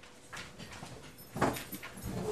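Faint shuffling and movement of people getting up in a large room, with one short, louder knock or voice-like sound about one and a half seconds in.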